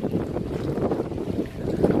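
Sea breeze buffeting the microphone: a steady low, rumbling wind noise.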